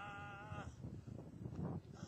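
Intro music: a held, wavering vocal note that stops about two-thirds of a second in, followed by a few low thumps.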